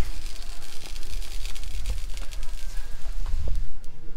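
Metal shopping cart being pushed along a hard store floor: a steady low rumble from the wheels with a continuous clatter of small rattles from the wire basket.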